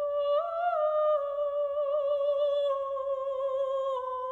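A female opera singer sings long held high notes with vibrato. The line rises briefly near the start, then steps slowly down in pitch.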